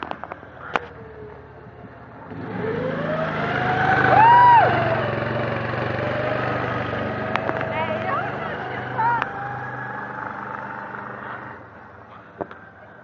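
A Baja SAE off-road buggy's single-cylinder Briggs & Stratton engine revs up about two seconds in, rising in pitch, then runs steadily as the car drives past and fades near the end. People shout whoops over it, loudest near the middle.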